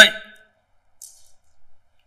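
A man's voice trails off on the word "So" at the very start, then a pause of near quiet with only a faint, brief noise about a second in.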